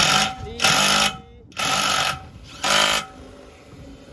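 Cordless drill-driver run in four short bursts about a second apart, its motor whining as the bit drives a screw into a panel.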